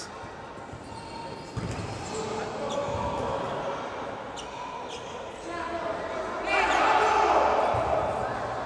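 Futsal game sounds echoing in a sports hall: a few sharp ball kicks and thuds on the court over players' voices. The voices and crowd noise grow louder for the last second or two.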